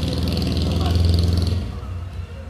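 A motor vehicle engine running, a low pulsing rumble that fades away about one and a half seconds in.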